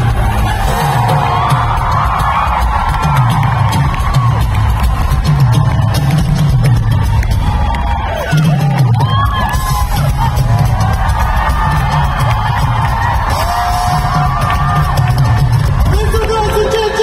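Live band playing a dance-pop song at arena volume, with a heavy repeating bass line and drums, heard from within the audience. There are whoops from the crowd, and the music dips briefly about eight seconds in.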